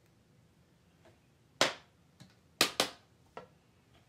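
A few sharp clicks and taps from small hand-held objects being handled. There are about five of them: a loud one about a second and a half in, a close loud pair later on, and softer ones between.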